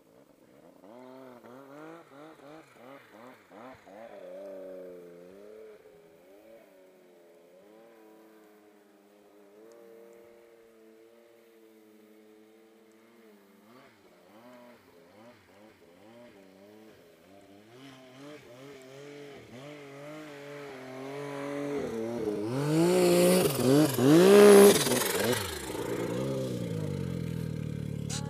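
Snowmobile engines revving as riders climb the slope below, rising and falling in pitch. From about two-thirds through, a sled comes up close and revs hard, the loudest part, then settles into a steady idle near the end.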